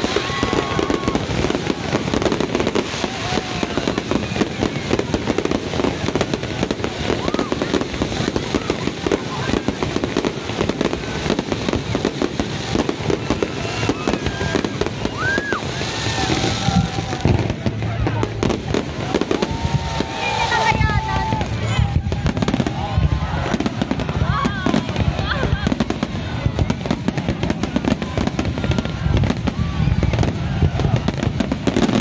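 Aerial fireworks display: shells bursting in a rapid, unbroken barrage of bangs and crackling.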